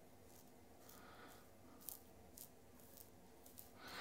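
Faint scraping of a stainless-steel double-edge safety razor (Rex Supply Ambassador) cutting stubble on the neck, in several short strokes.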